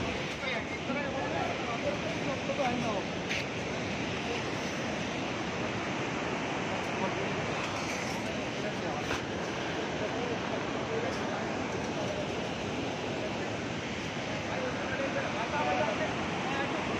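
Steady rushing noise, even and unbroken, with faint voices now and then.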